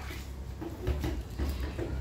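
A few light knocks and scrapes of a metal spoon in a plastic food container, over a low handling rumble.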